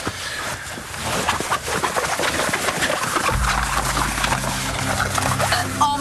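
Television drama score: a busy music cue that turns, about halfway through, into a low held chord, a dramatic sting under a shocking reveal.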